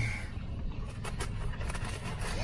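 Paper wrapping and a paper bag crinkling and rustling in short crackles as fried chicken is unwrapped, over a steady low rumble inside a car.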